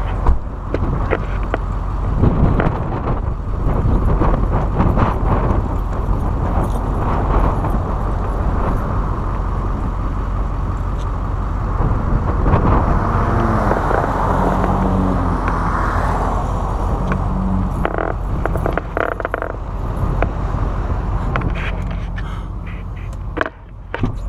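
Gusty wind buffeting the microphone through the open pickup cab, over the low steady rumble of the idling truck.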